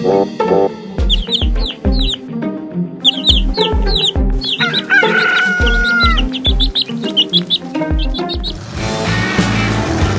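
Cartoon sound effects of chicks peeping in short rapid chirps, with a rooster crowing once about five seconds in, over a run of low thuds and background music. Guitar music takes over near the end.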